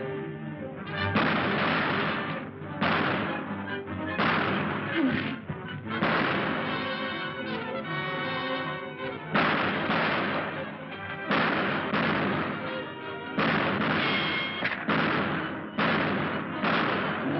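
A string of about eight pistol shots, one every second and a half to two seconds, each with a sharp crack fading into a long echo, over dramatic film score music.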